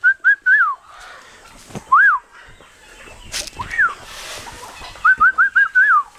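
A person whistling short, quick notes: a fast run of several at the start, single up-and-down whistles at about two and four seconds in, and another fast run near the end. A sharp click sounds between the single whistles.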